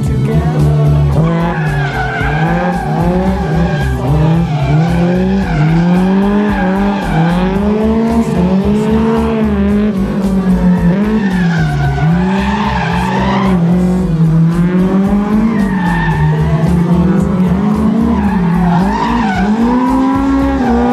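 Honda S2000's naturally aspirated four-cylinder engine, tuned by JS Racing, revving up and down over and over as the car drifts, with tyre squeal.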